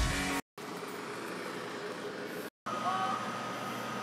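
Guitar rock music cuts off abruptly under half a second in, giving way to a steady, even background hiss and hum. The hiss drops out briefly in a second edit cut about halfway through, with a few faint thin tones near the end.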